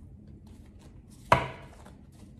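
A single sharp knock of a tarot card deck tapped or set down on a tabletop, about a second and a third in, with a brief ring after it.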